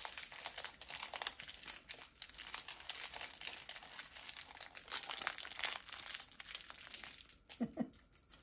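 Wrapping crinkling and rustling in the hands in quick, irregular bursts, dying away about seven seconds in. A brief vocal sound follows just before the end.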